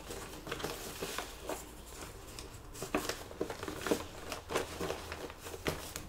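Light rustling and crinkling with scattered small taps: thin test silk sheets and papers being handled and laid into a cardboard kit box.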